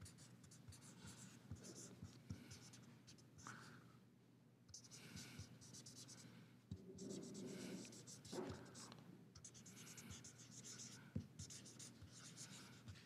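Faint scratching of a felt-tip marker writing characters on paper, in short separate strokes.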